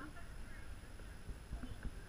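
A few soft, low thumps in quick succession in the second half, over faint distant voices.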